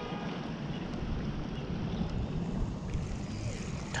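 Steady rush of flowing creek water, with wind buffeting the microphone.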